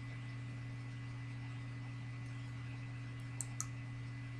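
Two quick computer mouse clicks near the end, over a steady low electrical hum.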